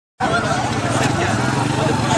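Small motorcycle engine idling close by, a steady low pulsing running under people's voices.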